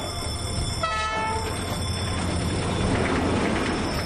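Train at a level crossing: a short horn blast about a second in, over a steady low rumble that swells toward the end as the train approaches.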